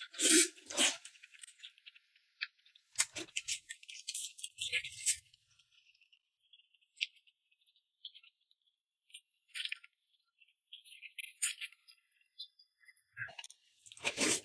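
Close-up eating sounds: wet chewing and lip-smacking as a person eats saucy meat, in several short clusters with quiet gaps between them.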